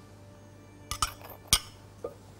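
Small glass jar of rose water clinking against a stainless steel cooking pot: a few light knocks about a second in, then one sharper clink half a second later.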